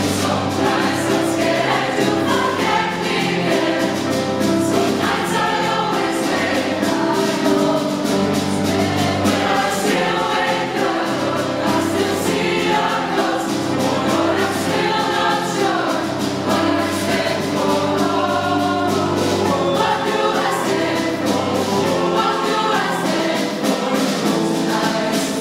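Mixed choir of young female and male voices singing a pop song together, with a held low bass line underneath.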